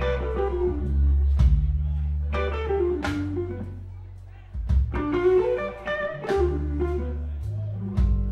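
Live slow blues played by an electric guitar, bass and drums trio. The electric guitar plays short falling phrases over held bass notes, with a sharp drum hit about every second and a half.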